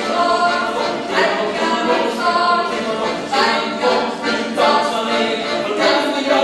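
Many voices singing together, a choir-like group singing a folk tune in unison.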